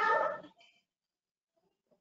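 A short pitched vocal sound, over by about half a second in, followed by faint scraps and then near quiet.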